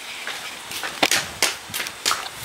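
A few sharp taps, uneven and a fraction of a second apart, as a toddler walks across a concrete porch.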